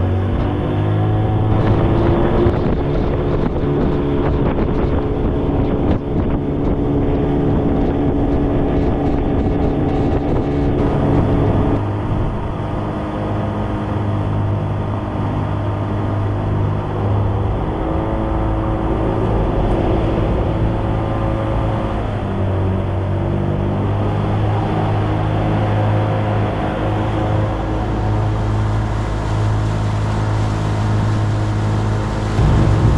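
Outboard motor driving a small aluminium boat under way, running steadily, with wind on the microphone and water rushing past the hull. The engine note climbs in the first couple of seconds, then holds.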